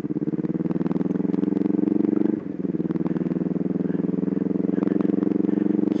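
Motorcycle engine running steadily under way, with a brief dip in its sound about two and a half seconds in before it picks up again.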